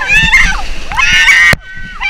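Rafters yelling and whooping in high voices over the rush and splash of whitewater breaking against the raft and paddles. The loudest shouting cuts off sharply about three quarters of the way through.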